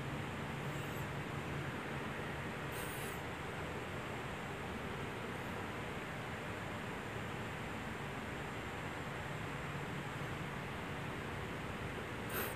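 Steady faint hiss of background noise, with two faint, brief paper rustles about one and three seconds in as pages of a small paper booklet are turned.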